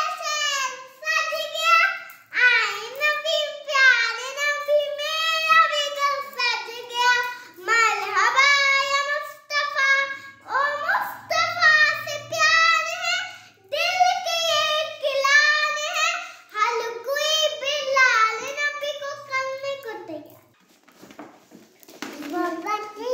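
A young girl singing unaccompanied in a high child's voice, in phrases of held, wavering notes with short breaks between them. She stops about twenty seconds in.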